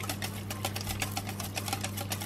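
Wire balloon whisk beating a runny chocolate mixture in a glass bowl: a rapid, even clicking of the wires against the glass.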